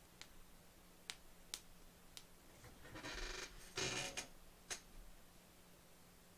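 Faint sharp clicks, about five scattered through, and two short rustling bursts about three and four seconds in from a seated person shifting position, over a low steady hum.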